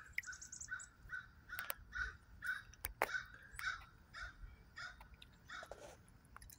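A bird calling over and over in a steady series of short, faint notes, about two a second.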